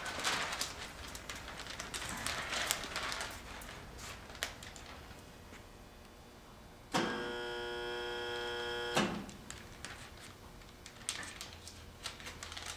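Thin plastic water-transfer printing film crinkling and crackling as it is handled and laid onto the water of a dip tank. About seven seconds in, a steady pitched hum starts suddenly and stops just as suddenly two seconds later.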